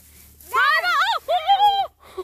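A woman crying out twice without words, her voice swooping up and down in pitch, with strain and alarm as she is pulled up out of a hole she has slipped into.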